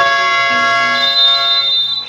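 A loud, steady electronic tone with several pitches held together, starting abruptly and cutting off after about two seconds.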